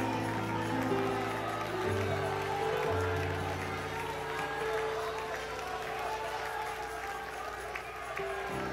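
Slow, sustained instrumental chords that change twice early on, under the scattered voices of a congregation praying and praising aloud in worship.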